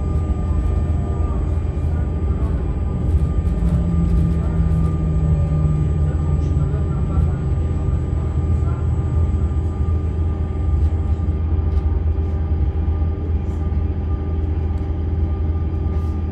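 Inside a Z 20500 double-deck electric multiple unit drawing into a station and stopping: a steady low rumble and hum with several faint steady electrical whines. The highest whine cuts out about two-thirds of the way through.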